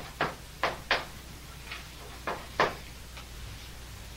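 Chalk striking a blackboard as words are written: a series of sharp, uneven taps, four in quick succession in the first second, then fewer and more spaced out.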